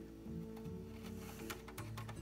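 Soft background music with sustained notes that change pitch, with a few faint clicks of small screws and a screwdriver being handled.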